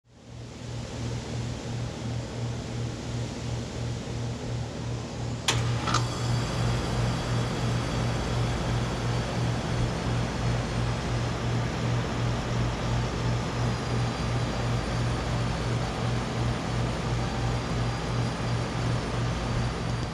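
2012 Bryant Legacy Line air conditioner's outdoor unit running: a steady low compressor hum with a slight even pulsing, under the air noise of the condenser fan, fading in at the start. A single sharp click about five and a half seconds in.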